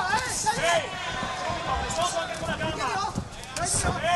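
Several dull thuds of kicks and punches landing on a kickboxer's body, about one a second, over shouting voices from the crowd and corners.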